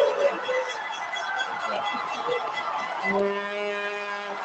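Hockey arena crowd cheering after a goal, played back through a lecture hall's speakers. About three seconds in, a steady held horn tone starts, typical of an arena goal horn.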